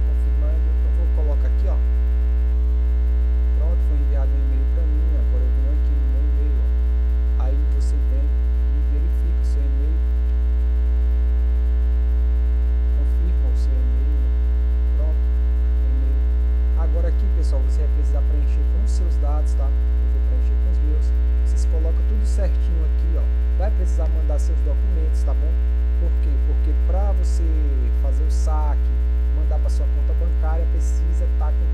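Loud, steady electrical mains hum from a faulty microphone.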